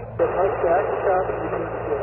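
A distant amateur station's voice received on the HF band through a portable transceiver's speaker, half-buried in steady static hiss. The hiss swells up suddenly just after the start.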